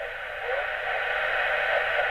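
Yaesu FT-857D HF transceiver's speaker tuned to 40-metre LSB: steady hiss of band noise with a faint voice broadcast down in the noise, getting louder in the first half-second as the volume is turned up. Received on only a one-metre copper strap antenna with the radio on battery power, this is the baseline noise before a switch-mode power supply is connected.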